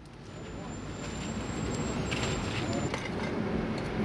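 Outdoor street ambience fading in: a steady rumble of traffic with indistinct voices, and a thin high-pitched tone through the first three seconds.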